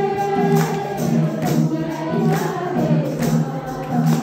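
A Nepali devotional bhajan, sung by a group led by a woman's voice on a microphone, over a steady beat of hand percussion.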